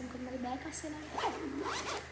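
A woman's voice briefly, then the zipper of a blue hard-shell zippered case pulled in two quick sweeps in the second half.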